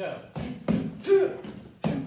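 Punches and a knee striking a hand-held kick shield: a quick series of about four sharp slaps and thuds.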